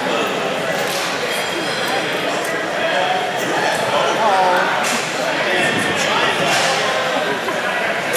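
Indistinct voices of several people talking at once, echoing in a large hall, with a few faint clicks.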